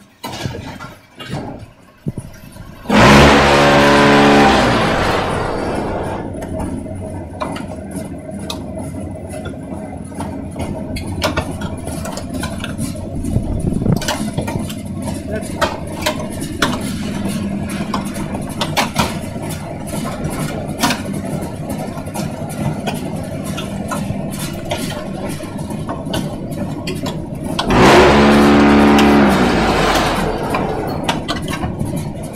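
Concrete pan mixer running steadily, its blades and roller churning sand and cement with a constant rattle of grit and many small clicks. Two loud spells of a strong pitched hum, about three seconds in and near the end, stand out over the running.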